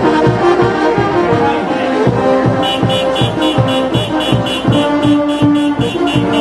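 Brass band music with a steady bass drum beat; quick cymbal strokes join in about halfway through.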